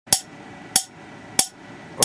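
Water-drop-triggered air spark gap firing: a sharp snap each time a falling water drop triggers the arc and its 4 nF capacitor discharges. Three snaps at an even pace of a little over half a second, with a fourth just at the end.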